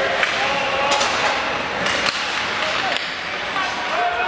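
Ice hockey play in an echoing rink: sharp clacks of sticks hitting the puck or the boards, about one a second, over indistinct voices of players and spectators calling out.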